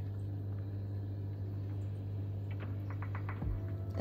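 Steady low electrical hum, with a few faint ticks near the end and a soft low bump about three and a half seconds in.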